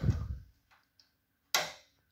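Two sharp clicks, each dying away within about half a second: one right at the start and another about a second and a half in.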